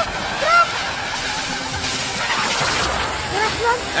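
Flames from a molotov cocktail burning on a floor, with a rushing hiss that swells and fades in the middle, amid brief shouted voices at the start and end.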